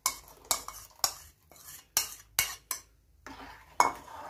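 Steel spoon scraping and clinking against a plastic bowl and an aluminium pan as a thick powder-and-milk paste is scraped into hot milk and stirred in: a series of sharp clicks about every half second.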